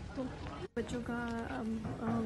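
A woman's voice, drawing out one long syllable and then speaking in short fragments, over store background noise; the sound drops out completely for a moment less than a second in, where the recording cuts.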